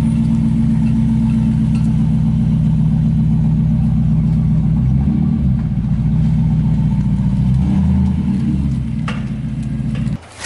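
A pickup truck's engine running close by, low and steady at idle, its note shifting a little about halfway through and again near the end as the truck moves off.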